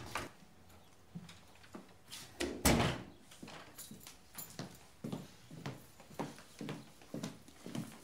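A door is shut with a firm thud a little before three seconds in, followed by footsteps on a wooden floor, about two steps a second.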